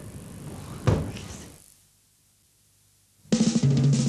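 A single thump about a second in, a moment of near silence, then a band's drum kit and bass start up suddenly and loudly about three seconds in: the opening of a song's accompaniment.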